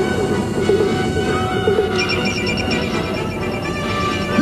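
Film-score music over a steady rumbling sound effect, with a run of evenly repeated high pinging tones coming in about halfway.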